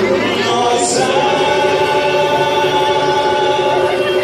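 Many voices singing a samba school's parade song together, holding one long note from about a second in.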